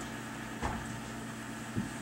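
Steady low indoor hum, with a soft bump about half a second in and a fainter one near the end as a small child crawls under a sheet-draped table.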